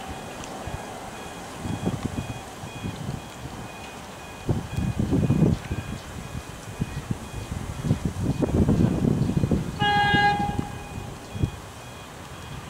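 Horn of an approaching HCMT electric train giving one short toot just before ten seconds in, over gusts of wind buffeting the microphone.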